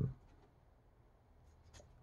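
Near silence, broken by a few faint soft ticks of thin plastic playing cards being handled and flexed near the end.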